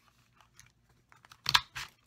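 Stampin' Up! daisy craft punch pressed down, cutting a daisy out of cardstock with a sharp crunch about one and a half seconds in and a second snap just after, following a few faint clicks of the paper being slid into the punch.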